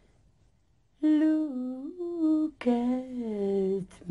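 A woman singing unaccompanied: a few long held notes that step up and down in pitch, starting about a second in after a quiet pause.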